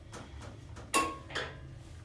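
Inside a hydraulic elevator car: a steady low hum, with a sharp click carrying a short ring about a second in and a softer click just after.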